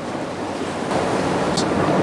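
Steady rushing of sea surf and wind on an outdoor microphone, growing a little louder about a second in.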